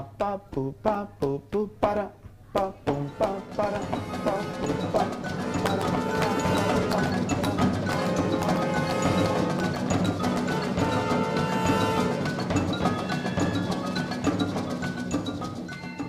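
A marimba struck in short separate notes, then from about four seconds in dense orchestral music with marimba and other percussion prominent.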